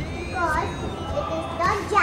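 Young children speaking, a child's voice talking in short phrases that grow louder near the end.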